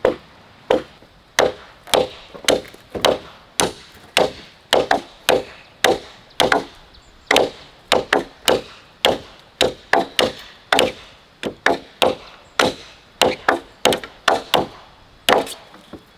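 A large knife chopping into a round wooden log, blade blows landing steadily about two a second and throwing off wood chips as a V-notch is cut through the log.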